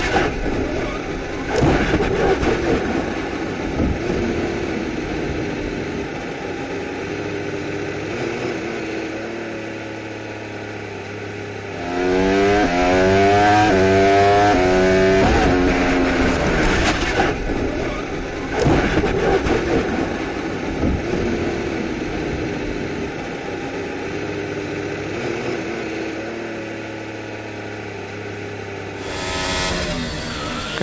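A Formula 1 car's turbocharged V6 heard onboard as the car crashes. There are hard knocks and scraping about a second or two in, then the engine runs on at low, steady revs. In the middle comes a loud run of repeated rising revs, and shortly after that more knocks.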